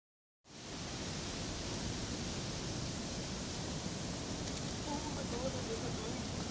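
Rough sea surf churning and washing, a steady rushing noise that comes in a moment after the start.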